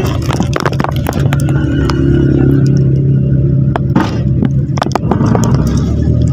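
Jeepney engine running, heard from inside the open passenger cabin, its low hum steadiest and loudest through the middle, with frequent rattles and clicks from the body.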